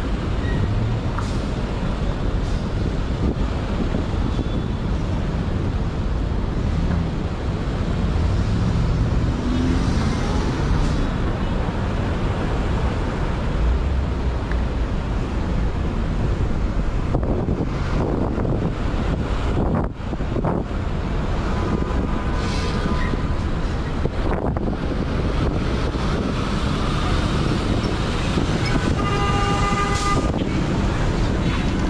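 City street traffic heard from the sidewalk: a steady rumble of passing cars, vans and trucks. A short car horn toot sounds near the end.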